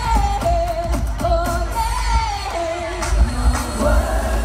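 Live pop concert music through a stadium PA: a singer holds wavering notes over a heavy bass, heard from within the crowd.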